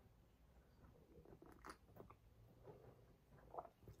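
Near silence with faint sipping and swallowing as tea with milk is drunk from a ceramic mug: a few soft small clicks and mouth noises.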